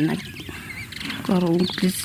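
A person speaking, with a pause of about a second near the start.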